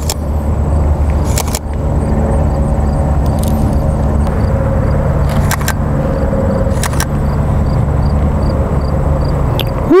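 Steady low rumble of road traffic, with three sharp clicks about a second and a half, five and a half and seven seconds in.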